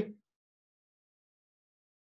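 Dead silence, the audio cut to nothing, just after a man's voice trails off at the very start.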